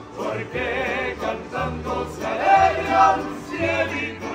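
A mariachi band of men singing together in harmony, with guitars and a low bass line underneath, the bass changing note every half second to a second.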